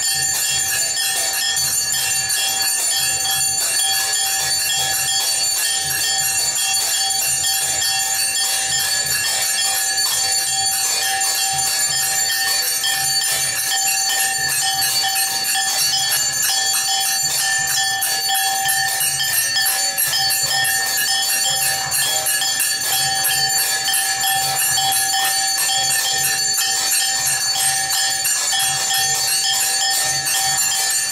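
Aarti music of brass hand cymbals clashing in a fast, steady rhythm over temple bells ringing without a break.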